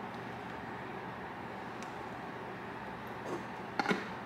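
Steady background hiss of room tone, with a faint click about halfway through and a few soft knocks near the end as a clear plastic portable blender cup is handled.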